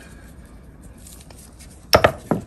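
Quiet kitchen room tone while spices are sprinkled on raw chicken, then a single sharp knock near the end as something hard strikes the counter or cutting board.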